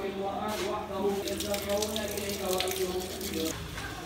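Water running from a wall tap and splashing as a man washes his hands and face at a row of faucets; the splashing stops near the end.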